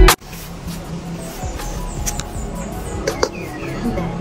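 Background music cuts off abruptly at the start, leaving quiet outdoor garden ambience with a faint low hum and a few soft clicks and rustles from handling plants while picking.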